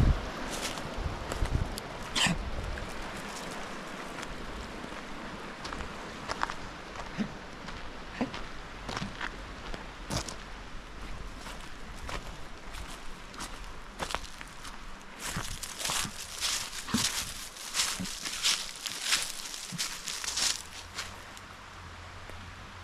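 Footsteps walking over dry leaves, twigs, gravel and grass: irregular light crackles and scuffs, thicker and louder in the last third. A stream's rush is heard in the first few seconds and fades as the walker moves away.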